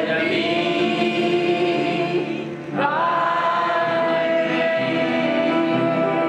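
Sung church music: voices holding long notes, with a short break and a new phrase beginning a little under halfway through.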